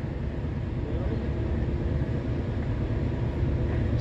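Steady low rumble of an approaching CSX freight train's diesel locomotives, with a faint steady hum over it.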